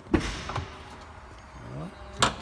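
Cadillac Escalade door unlatching and opening with a sharp clunk, followed by a lighter click, as the power-retractable running board begins to extend.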